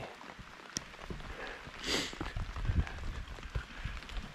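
A person moving about on wet ground and wood chips, with handling noise from the camera: scattered light knocks and rustles, with a brief louder rustle about two seconds in.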